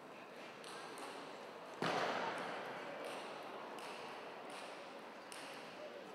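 Table tennis ball being struck back and forth in a rally: a steady run of light clicks, under a second apart. A sudden burst of crowd noise comes in about two seconds in and fades away.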